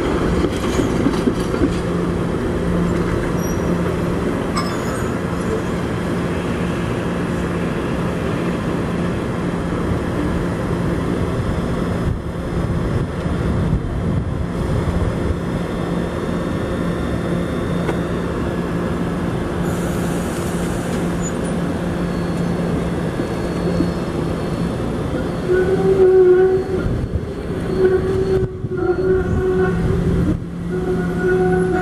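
SEPTA Kawasaki light-rail trolley rolling slowly past on street track, with a steady low hum of its running gear and equipment. Near the end, as it swings onto the curve into the tunnel portal, a louder pitched tone comes and goes in short stretches.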